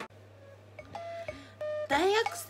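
Two short held musical notes, the second a little lower than the first, like a brief ding-dong, over a low steady hum. A voice starts up at the very end.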